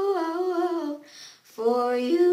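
A boy's voice humming a melody in held, gliding notes, breaking off about a second in and picking up again half a second later.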